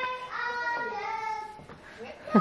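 A high voice singing a few drawn-out notes, fading near the end.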